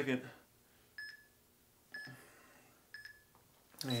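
Workout interval timer counting down with three short electronic beeps, one a second, signalling the change to the other side of the stretch.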